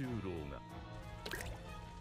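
Faint anime soundtrack: a Japanese voice, the subtitled narration, over background music.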